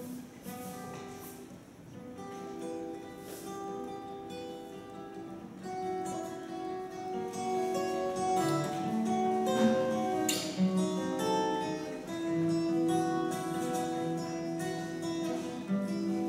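Solo steel-string acoustic guitar playing the instrumental introduction of a song, chords ringing out one over another. It grows louder after the first few seconds.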